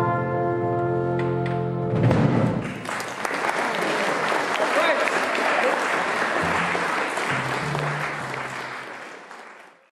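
A small traditional jazz band of cornet, clarinet and trombone over piano, bass and drums holds its final chord for about two seconds. The audience then applauds, and the applause fades out near the end.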